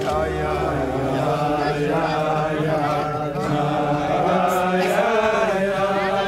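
A group of voices singing a melody together under the wedding canopy, sustained and continuous without a break.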